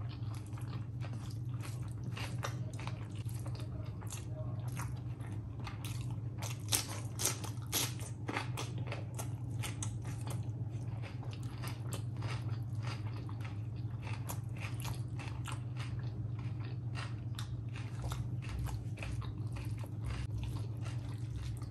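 Close-miked chewing of rice and curry eaten by hand, with many wet mouth clicks and smacks. The clicks are loudest and densest around the middle. A steady low hum runs underneath.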